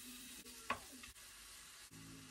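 Sliced beef sizzling in a hot pot as it is stirred with a wooden spoon, with one sharp knock about two-thirds of a second in.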